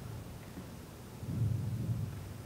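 A low rumble that swells louder a little over a second in.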